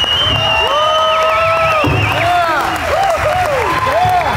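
Audience applauding and cheering with whoops as a big-band piece ends, over a long shrill whistle that warbles in the middle before stopping.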